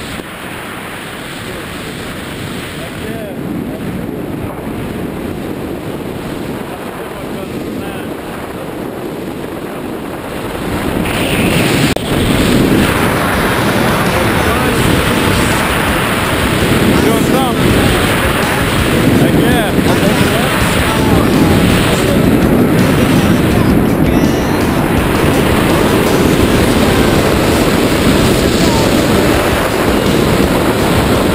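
Wind rushing over the camera's microphone during a tandem parachute descent under an open canopy, getting louder about a third of the way in.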